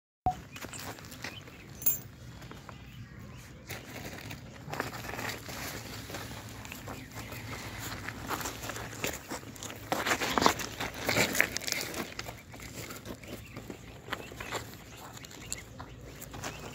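Scattered small clicks and rustles, busiest about two-thirds of the way through: river pebbles shifting and a metal chain clinking as a puppy scrambles about on stones, over a low steady hum.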